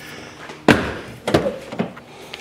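A car door shutting with a sharp thunk less than a second in, followed by two lighter knocks as the doors are handled.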